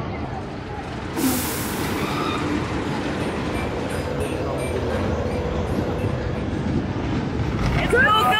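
Spinning wild mouse roller coaster cars rolling along steel track with a steady rumble, with a short burst of hissing air about a second in. Voices murmur underneath.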